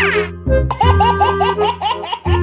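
Background music with a steady bass line; about two-thirds of a second in, a baby's rapid, repeated laughter starts over it, about six bursts a second. A quick falling glide sounds at the very start.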